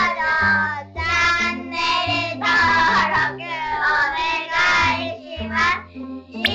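Outro music: a sung melody over a stepping bass line.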